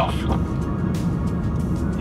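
Steady road and tyre noise of a moving car, with background music over it.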